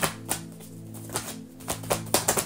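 A deck of tarot cards being shuffled by hand, giving scattered sharp clicks and flicks, a few close together near the end. Soft background music with steady held notes plays underneath.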